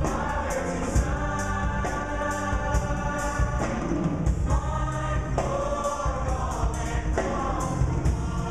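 Mixed show choir singing in harmony with a live band, a drum kit keeping a steady beat under the voices.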